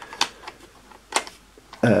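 Two sharp plastic clicks, about a second apart, from a hand-held drone transmitter being handled, its control sticks worked by the thumbs. A short spoken 'uh' comes near the end.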